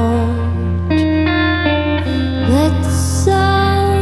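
Live slow song: electric guitar notes held and changing over a steady low drone from keyboard or synth, with a couple of notes bending upward about halfway through.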